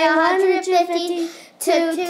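Speech only: a child's voice reading aloud slowly, in a drawn-out sing-song, with a short break about one and a half seconds in.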